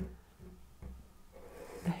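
Faint scratch of a soft pastel stick being drawn across pastel paper, over low room hum.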